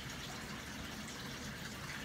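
Low, steady sound of water running from an aquarium canister filter into the tank.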